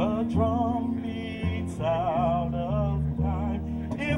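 Live jazz combo playing an instrumental passage: a saxophone melody with a wide vibrato over upright bass, keyboard and congas.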